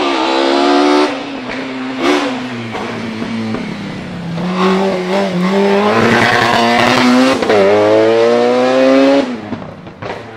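Ford Escort Mk2 hillclimb car's naturally aspirated 2.0-litre 16-valve inline-four, fed by individual throttle bodies, driven flat out past at high revs with a screaming intake note. The pitch climbs, drops sharply at gear changes about a second in and again about seven and a half seconds in, sits lower for a few seconds in the middle, then climbs once more before the sound falls away near the end.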